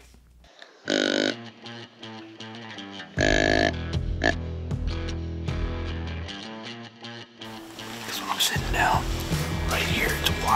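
Dramatic background music with two heavy hits, about one second and three seconds in, followed by a sustained musical bed.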